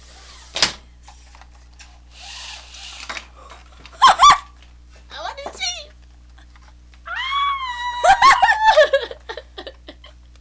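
People giggling and squealing in very high voices, with a short burst of squeals about four seconds in and a long, high squeal from about seven seconds in.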